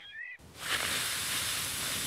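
Cartoon blowing sound: a long, steady, airy hiss of breath blown hard through a bubble wand, starting about half a second in.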